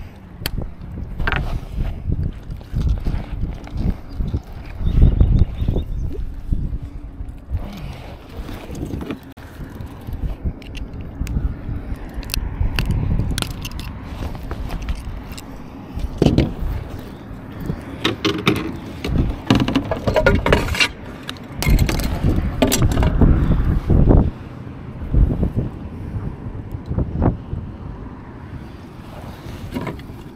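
Irregular knocks, clicks and scrapes of handling on a fishing kayak as a small bass is swung aboard, unhooked and laid on a measuring board, loudest about five seconds in and again some twenty seconds in.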